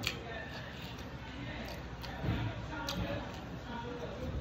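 Close-up eating sounds: chewing and mouth noises, with a few sharp clicks from the plastic sushi tray as fingers pick at the food, and a brief low murmur a little past halfway.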